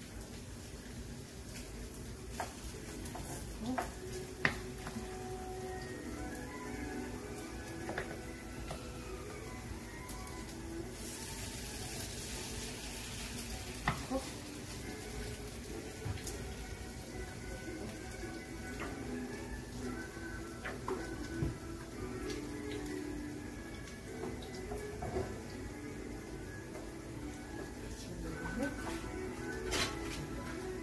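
Potato and vegetable pancakes frying in oil in a pan: a low sizzle with occasional sharp clicks of a utensil, under background music. The hiss swells for about three seconds near the middle.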